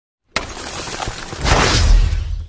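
Intro sound effect for a title-card reveal: a sudden crash about a third of a second in, then a louder swell with a deep boom underneath about a second and a half in.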